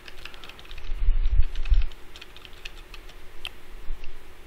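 Computer keyboard keys being tapped in quick, irregular succession while code is edited. A few low thuds come about one to two seconds in.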